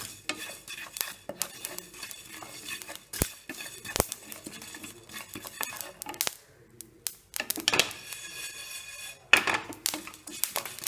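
Fennel seeds dry-roasting in a steel pan, stirred with a spatula: irregular scraping and clicking of the spatula on the pan with the seeds rustling, two sharper knocks about three and four seconds in, and louder scraping near the end.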